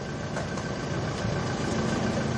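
Steady low hum of an idling vehicle engine, growing slightly louder toward the end.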